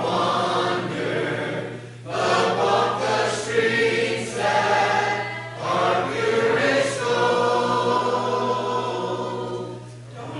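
Congregation singing a hymn a cappella, with unaccompanied voices in unison and parts. Brief gaps between phrases come about two seconds and five and a half seconds in, and a phrase ends near the end.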